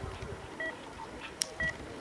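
Short electronic beeps, two tones at once, repeating about once a second: a ski race's start-timing beeper, heard through the course loudspeakers. A single sharp click sounds about one and a half seconds in.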